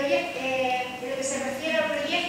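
A woman speaking Spanish at a lectern, her voice carried through the hall's sound system.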